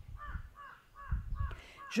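A bird calling in a quick series of about seven short calls, three or four a second, with a faint low rumble underneath.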